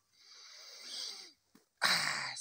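A man sniffing a handful of hay held to his nose: one long hissing inhale of about a second that grows louder, then stops. Near the end comes a short, louder, sharp breath.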